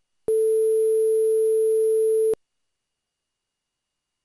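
A single steady electronic telephone tone, one unbroken pitch held for about two seconds, then it cuts off suddenly.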